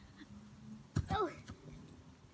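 A sharp thump about a second in, followed at once by a girl's short exclamation, "oh".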